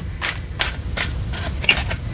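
Tarot cards being handled as a card is drawn from the deck: a run of about five short papery scrapes and flicks.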